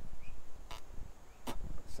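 Two short puffs of breath blown through a windscreen-washer hose, about a second apart, over a low rumble. The air passes freely: the hose is now clear all the way through.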